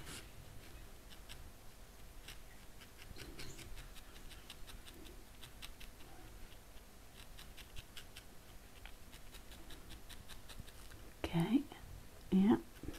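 A felting needle stabbing again and again into wool, giving faint, irregular crisp pokes and ticks. Near the end, two short voiced sounds stand out over it.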